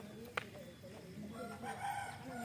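Faint pitched calls in the background, growing louder near the end, with a single sharp click about a third of a second in.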